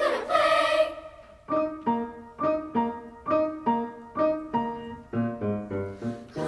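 An intermediate-school children's choir holds a sung phrase that ends about a second in. A piano then plays short, detached chords at about two a second, with lower bass notes joining near the end.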